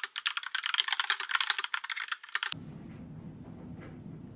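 Fast typing on a keyboard with round typewriter-style keycaps: a dense run of key clicks that stops abruptly about two and a half seconds in, leaving a low steady room hum.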